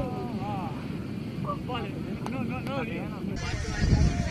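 People laughing in short bursts of rhythmic 'ha-ha' pulses, over a low rumble of wind on the microphone. Near the end the background changes abruptly and the rumble grows louder.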